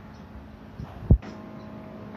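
A single dull, low thump about a second in, over a faint steady hum.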